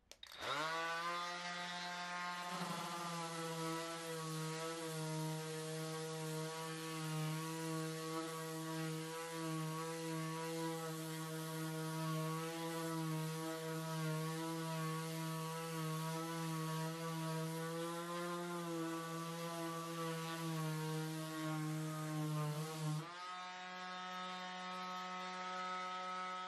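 Cordless DeWalt random orbit sander sanding a pine board. The motor spins up with a rising whine just after the start, then runs at a steady whine while the pad works the wood. Near the end it shifts to a quieter, steadier tone.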